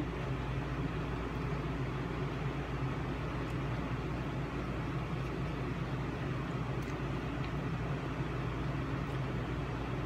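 Steady low hum and hiss of an air conditioner running in the room, unchanging throughout.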